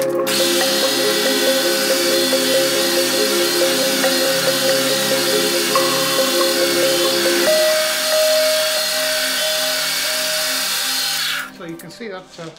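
A power drill running steadily, its twist bit boring a hole in an aluminium bracket. It cuts off about a second before the end, over background music with sustained chords.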